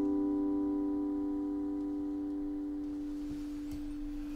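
Acoustic guitar's final chord ringing out and slowly fading, with no new notes struck.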